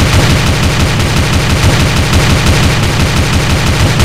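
Automatic gunfire: a loud, rapid, unbroken volley of shots, many a second.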